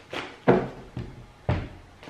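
Tarot cards being shuffled and knocked down onto a tabletop: four sharp knocks about half a second apart, the second the loudest.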